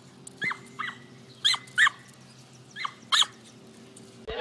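A dog giving short, high-pitched yips, six in all, in three quick pairs, each yip falling in pitch.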